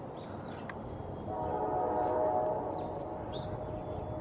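A horn sounds one held chord of several notes, swelling in about a second in and fading out about two seconds later, over a steady low outdoor rumble. A few short high chirps come through around it.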